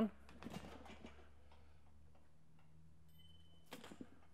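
Low steady room hum, with a faint short high beep a little over three seconds in from the barbell velocity sensor's app: the ding that cues the lifter to drive the bar up. A brief knock follows just before the end.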